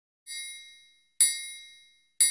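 Two bell-like dings about a second apart, each ringing briefly and fading away, with the second louder than the first: a countdown sound effect ticking off the numbers.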